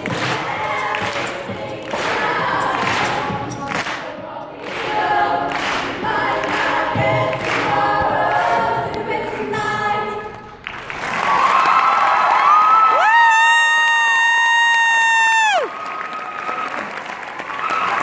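High school show choir singing a cappella over a rhythmic beat. Near the end a single female solo voice slides up into a long, loud, high held note that cuts off sharply, and the audience bursts into cheering.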